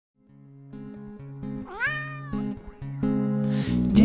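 A cat meows once about two seconds in, its pitch rising and then falling, over single picked acoustic guitar notes that grow louder toward the start of the song.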